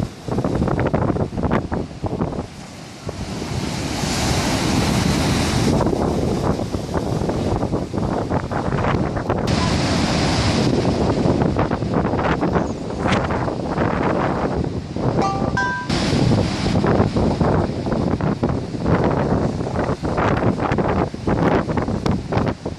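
Heavy storm surf breaking and washing up against a seafront wall: a continuous rushing of waves and whitewater, briefly dropping a little about two seconds in.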